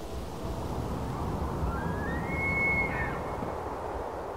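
A bull elk bugling, the rutting call: a high, whistle-like tone that climbs, holds for about a second and then drops away. Under it runs a steady low rush of background noise.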